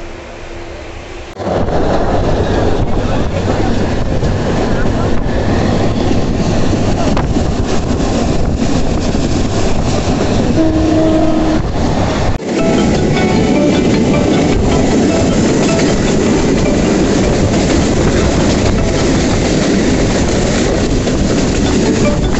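Passenger train running at speed: a loud, dense rumble and rattle of the carriage on the rails that starts abruptly about a second and a half in and carries on steadily, with a brief break about halfway through.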